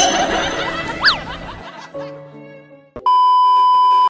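Background music fades out, with a quick up-and-down whistling glide about a second in. Then, about three seconds in, a loud, steady, high beep begins: the television test tone that goes with colour bars.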